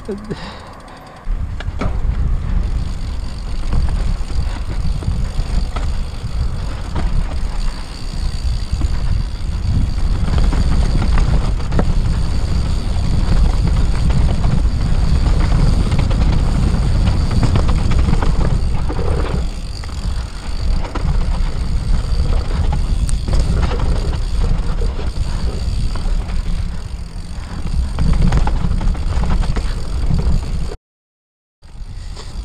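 Yeti SB6 mountain bike descending dry dirt singletrack: a heavy rumble of wind and trail buzz on the camera microphone, with tyres rolling on dirt and frequent rattles and knocks from the bike. The riding noise comes in about a second in and carries on unbroken.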